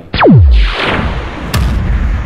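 Edited sound-effect hit: a fast falling tone sweeps down into a deep boom, followed by a fading noisy swell and a sharp crack about a second and a half in.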